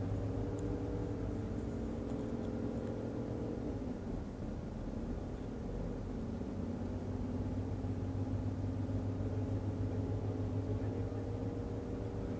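Coach engine running and road noise heard from inside the moving bus, a steady low hum whose note changes about four seconds in as the bus slows and picks up again.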